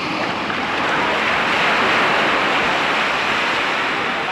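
Small waves breaking and washing up on a sandy shore: a steady rush of surf that swells a little midway.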